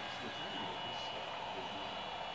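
Steady whir of a powered but idle 3D printer, its small cooling fans running, with a faint high whine over it.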